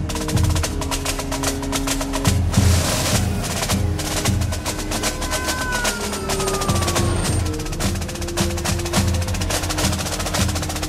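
Orchestral film score driven by rapid military-style snare drumming and drum rolls over sustained low tones, with a falling tone about halfway through.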